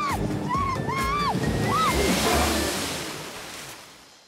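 A woman on a jet ski shrieking with laughter in several short rising-and-falling whoops over wind buffeting on the microphone, then a broad rush of water spray that swells about halfway through and fades away as she is thrown off the jet ski on a hard turn.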